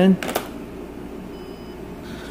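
A sharp click, then a faint, brief electronic beep from a cordless phone about one and a half seconds in.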